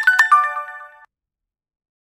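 A short bell-like chime sound effect on an animated Subscribe-button end screen: a few sharp clicks and ringing notes stepping down in pitch, ringing out for about a second.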